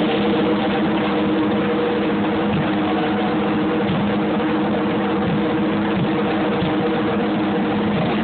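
Live drum kit in a drum solo, played as a continuous roll with cymbal wash so that it runs as one unbroken roar, with a few steady held pitches underneath.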